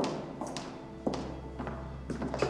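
Footsteps on a hard corridor floor, about two a second, over background music with held tones.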